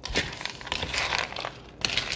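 Shelled peanuts being stirred in a mixing bowl, a rapid clatter of many small clicks as the nuts tumble against each other and the bowl, easing off briefly near the end.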